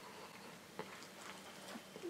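Faint chewing of a mouthful of burger, with a few soft mouth clicks and ticks.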